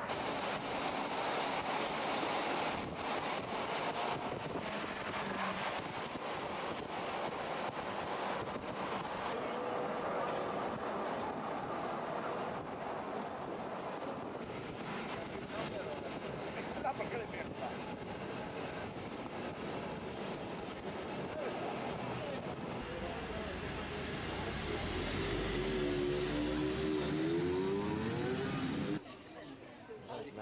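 Bernina Express train running, heard through an open carriage window: a steady running noise, with a thin high steady whine for about five seconds near the middle and a deeper rumble toward the end. The sound cuts off suddenly about a second before the end.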